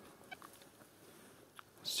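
Metal detector giving a few faint, short beeps as its coil sweeps low over grass, signalling a target underground. A voice comes in at the very end.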